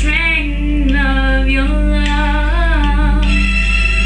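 A young woman singing solo, her voice gliding between long held notes in a slow ballad.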